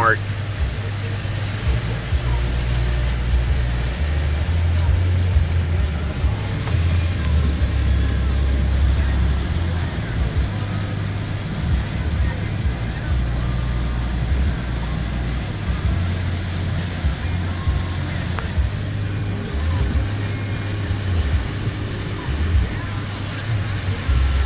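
Car cabin noise while driving through a flooded street in rain: a steady low rumble of the car underway with a hiss of water and rain.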